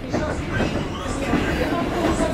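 Steady low rumble of a passenger train carriage heard from inside, with low voices over it.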